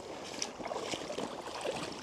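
Shallow, clear stream flowing: a steady rush of water with a few faint ticks.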